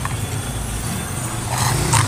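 Steady low engine rumble from motor vehicles in the street, with a brief higher noise near the end.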